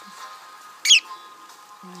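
A pet budgerigar gives one short, sharp chirp that falls steeply in pitch, a little before halfway, over faint background music.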